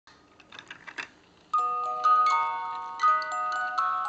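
Vintage Reuge ballerina music box starting to play: a few faint clicks, then from about a second and a half in, its steel comb, plucked by the pins of the turning cylinder, plays a tune of bright ringing notes, often several at once, each note ringing on as the next is struck.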